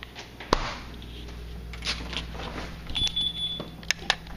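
Refrigerator door shutting with one sharp knock about half a second in. Light handling clicks and knocks follow, with a brief faint high tone near the end.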